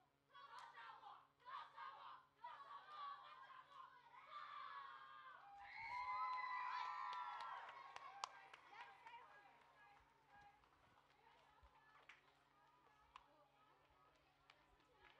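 Faint children's voices: scattered calls, then several children shouting together about six seconds in, fading away after.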